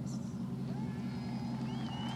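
A car engine idling steadily, with faint distant voices over it.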